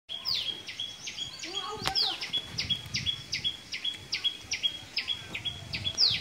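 A small bird chirping over and over at an even pace, about four calls a second, each a quick downward sweep ending in a short held note, over faint outdoor background noise.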